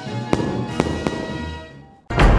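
Intro music sting with a few sharp percussive hits in the first second, dying away near the end.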